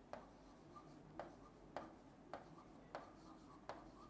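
Faint pen strokes on a writing board while handwriting: a series of light, sharp taps about every half second.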